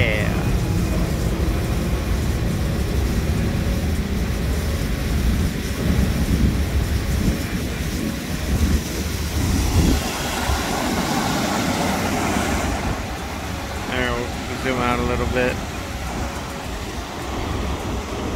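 Steady outdoor background noise: a low rumble with hiss over it, rising and falling in strength. A brief wavering pitched sound comes about fourteen seconds in.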